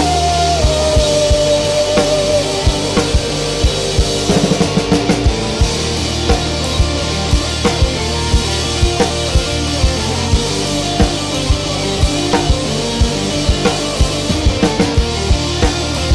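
A rock band plays an instrumental passage with a steady drum-kit beat, bass guitar, electric guitars and keyboard. A held high note slides down in pitch over the first couple of seconds, then the band carries on with regular snare and kick hits.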